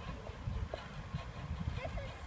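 Flying fox trolley running along its steel cable as the rider comes down the line, a low rumble with irregular knocking. A child's voice calls briefly near the end.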